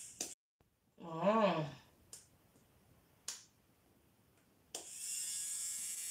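Small electric motor of a nail drill buzzing, cut off suddenly just after the start. After a short hummed voice and a couple of faint clicks, it switches back on near the end and runs steadily.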